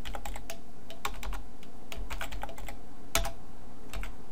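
Typing on a computer keyboard: a run of irregular keystrokes, with one louder keystroke about three seconds in.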